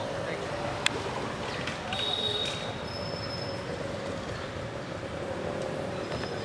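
Outdoor background with indistinct voices over a steady hum, and a single sharp click about a second in.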